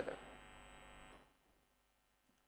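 Near silence: a faint steady electrical hum, which drops away about a second in.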